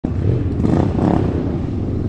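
Motorcycle engine sound, a loud, steady, low rumble that starts abruptly.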